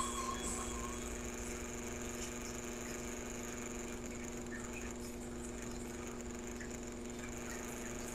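Guitar music fading out in the first moments, then a faint, steady electrical hum with a thin high whine above it.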